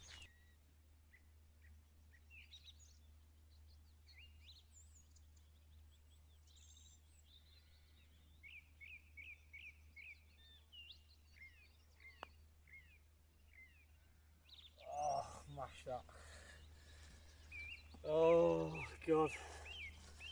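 Faint birdsong: scattered short chirps, with a quick run of repeated chirps, about four a second, midway through. About twelve seconds in comes a single light click of a golf club striking the ball on the green, and a man's voice follows near the end.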